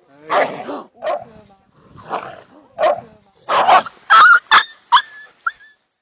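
Dogs at play barking and yelping: a run of short, separate barks, then quicker high yelps with sliding pitch near the end.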